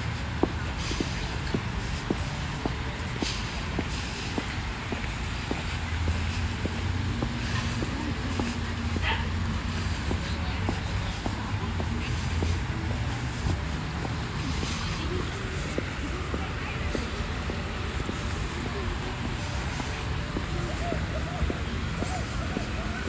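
Outdoor street ambience while walking on a pavement: a steady low rumble with indistinct voices and faint footstep ticks.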